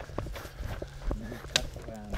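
Footsteps of a person walking on a trail, a steady tread of about two steps a second.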